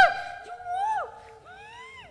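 High-pitched wailing cries from the person being prayed over for deliverance, a loud one right at the start and another about half a second in, with a third rising near the end, over a steady background tone.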